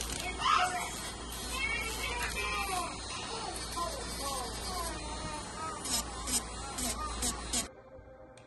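Electric nail drill with a sanding band grinding down acrylic nails, its motor whine repeatedly dipping in pitch as it bears on the nail. It cuts off abruptly near the end.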